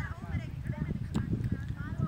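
Children's high voices calling out across an open ground during a street cricket game, over a choppy low rumble of wind on the microphone; a single sharp tap about a second in.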